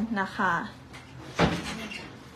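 A single sharp knock with a short ringing tail, about one and a half seconds in, following a brief spoken word.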